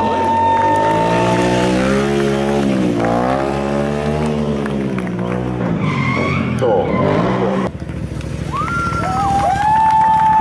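Sport motorcycle engine revving during stunt riding, its pitch sinking and then climbing again over the first few seconds. A steady high squeal sounds at the start and again near the end.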